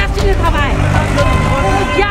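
A woman's raised voice and other voices arguing heatedly in Nepali, over a low steady rumble.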